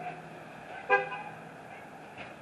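A single short car horn toot about a second in, over a low steady hum.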